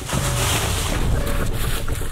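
Wind buffeting the microphone, a steady rushing noise, with dry fallen leaves rustling and crunching as a person scrambles down and tumbles through them.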